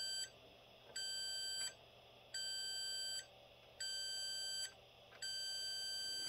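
Digital multimeter's continuity beeper giving a steady tone in five separate beeps, each under a second, as the probe is touched to the connector pins in turn. Each beep signals continuity: those pins are wired to ground.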